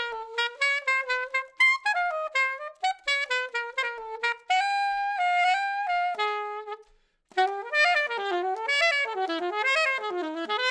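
Alto saxophone with a refaced Meyer 6M mouthpiece played solo: quick runs of short notes, a longer held note in the middle, a brief pause for breath about seven seconds in, then another fast phrase.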